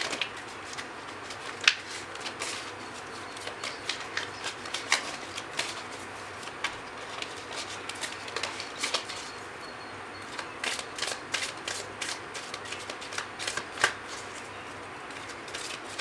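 A deck of cards being shuffled by hand: a string of irregular soft flicks and taps, with one sharper snap early on and the flicks coming thicker in the last few seconds.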